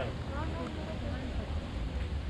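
Indistinct voices of people talking nearby, most clearly in the first second, over a steady low rumble.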